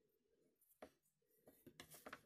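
Near silence, with one faint click just under a second in and faint rustling near the end as the crocheted lace piece is handled on the table.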